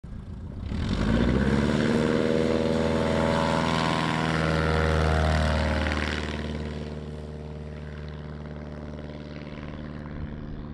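Light single-engine bush plane's propeller engine at full power, swelling suddenly about a second in as the plane comes off the cliff edge. It stays loud past the microphone, drops in pitch at about five to six seconds as it goes by, and fades as it flies away.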